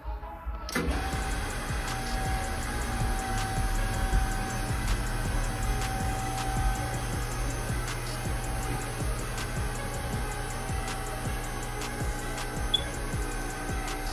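Electric freight lift running as its platform travels the shaft. A steady motor hum starts suddenly about a second in and holds even, with faint ticks and rattles.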